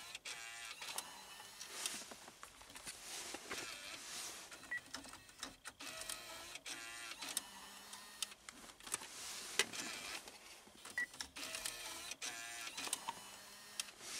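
A GM six-disc in-dash CD changer ejecting its discs one after another: a small motor whirs and the mechanism clicks as each disc is fed out of the slot, several times over.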